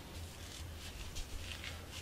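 Faint handling noise of a cotton-gloved hand moving single-action revolvers on a carpeted surface: a few soft rustles and light bumps, mostly in the second half, over a steady low hum.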